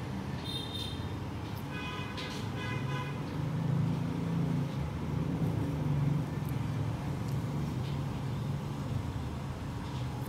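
Steady low background rumble, with a short high tone about half a second in and a brief run of higher tones around two to three seconds in.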